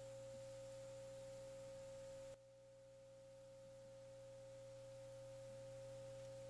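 Near silence with a steady electrical hum and a faint steady high tone. About two and a half seconds in, the level drops suddenly, then slowly creeps back up.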